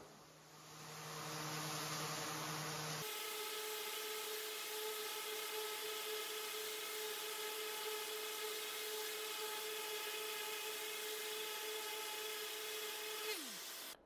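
5-inch random orbit sander with 60-grit paper running steadily as it sands an inlay flush with a wooden board, a constant motor whine. Near the end its pitch drops quickly as it winds down.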